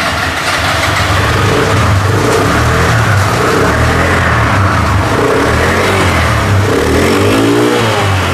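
Small carburetted four-stroke scooter engine running, its pitch rising and falling slightly as it is revved a little.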